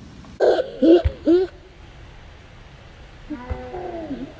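A girl's wordless shouts: a loud burst of short cries between about half a second and a second and a half in, then a softer drawn-out call near the end. A basketball thuds once on the pavement about a second in.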